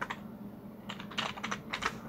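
Typing on a computer keyboard: a few scattered keystrokes, then a quick run of key clicks in the second half.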